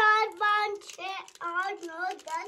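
A small child singing in a sing-song voice: a run of short, high-pitched sung syllables, each held briefly, the pitch bending up and down.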